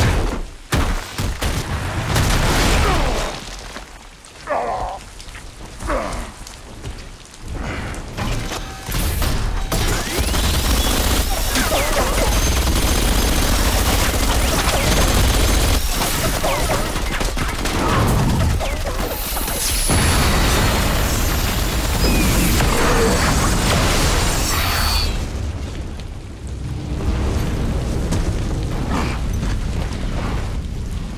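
Film action sound effects: a string of heavy impacts and crashes, then a long loud stretch of dense rumbling noise with booms, easing off near the end.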